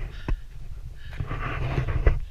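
A runner's breathing and footfalls, with a sharp knock about a quarter second in and wind rumbling on the camera microphone.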